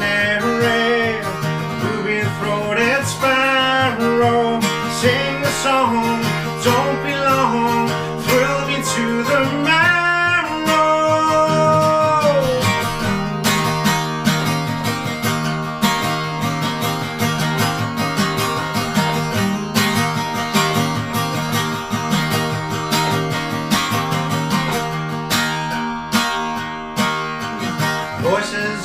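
Acoustic guitar played steadily in a folk-rock strumming pattern, with a voice singing a wavering, bending melody over it through about the first half and the guitar carrying on alone after that.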